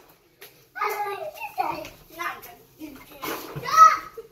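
Children's voices talking in several short phrases with brief pauses between them.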